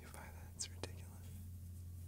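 A faint breathy whisper or exhale in the first second, with a single click just under a second in, then only a steady low hum.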